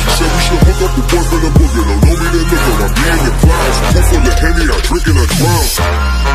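Hip hop track: a rap-style vocal over deep bass and a heavy kick drum, the arrangement changing near the end.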